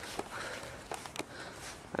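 A few soft footsteps on a wet, puddled rooftop floor, heard as scattered light taps over faint steady background noise.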